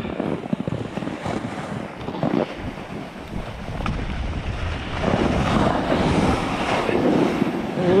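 Snowboard sliding down a groomed snow slope, the base and edges scraping and hissing over the snow, with wind buffeting the microphone. The scraping grows louder for the last few seconds as the rider sets the board on its edge to brake.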